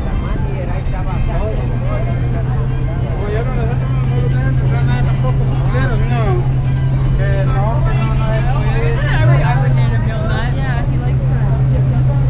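Busy city sidewalk: passersby talking over a steady low hum of street traffic, the hum briefly rising in pitch a little past nine seconds.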